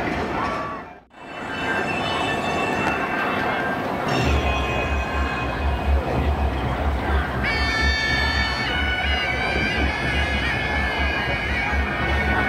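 Procession music: a low pulsing beat comes in about four seconds in. About three seconds later a reedy wind instrument joins, holding high sustained notes.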